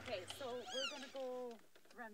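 A person's voice making drawn-out vocal sounds that rise and fall in pitch, ending in a short held tone past the middle; no clear words come through.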